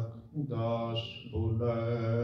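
A man's voice chanting a prayer in long, level held notes at a low pitch, breaking off briefly twice.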